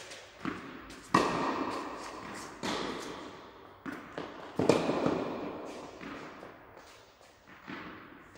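Tennis ball being struck by a racket and bouncing on the court, about six sharp impacts a second or so apart, the loudest about a second in and near the middle, each ringing out in the reverberant indoor hall.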